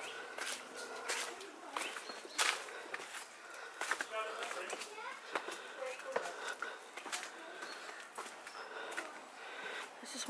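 Footsteps on stone steps and a path scattered with dry fallen leaves, a run of irregular short footfalls and scuffs. A brief faint voice comes in about four seconds in.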